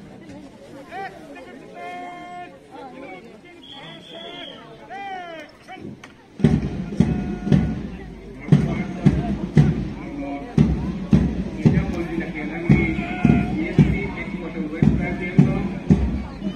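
Faint voices and a few pitched whistle-like tones, then about six seconds in a marching band strikes up. A bass drum beats in groups of three under a sustained tune.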